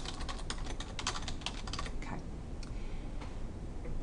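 Computer keyboard keys clicking as a word is typed: a quick run of keystrokes that stops about halfway through.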